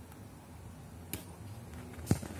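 A single short sharp click a little over a second in, over a faint low steady hum.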